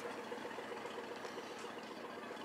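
A steady mechanical hum under an even rushing noise, like a vessel's engine running.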